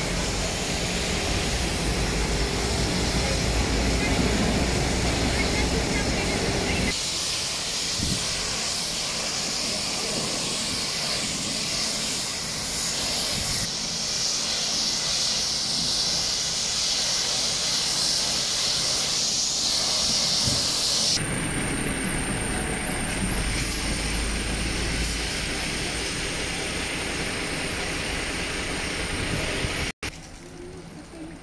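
High-pressure water jets hissing onto the pavement during street washing, with a vehicle engine running underneath. The sound changes abruptly three times.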